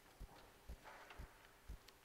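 Faint, even beat of soft low thuds, about two a second.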